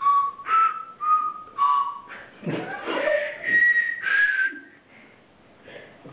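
Small toy whistles, each sounding a single note, blown one after another in turn to play a tune: short separate notes of differing pitch, quick ones in the first two seconds, then a few higher, longer notes before it falls quiet for a moment.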